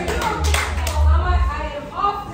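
A handful of scattered hand claps in the first second, over people's voices and a steady low hum.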